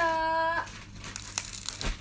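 A woman's voice holds a short, steady sung note, followed by about a second and a half of dry crinkling, crackling noise.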